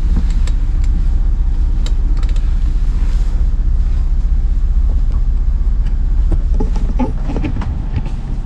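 A steady low mechanical rumble of running machinery, with a few light clicks and knocks as the steering wheel is handled on its helm column.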